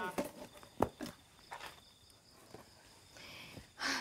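A few soft footsteps on grass, with a steady high insect trill, like a cricket, behind them for the first half.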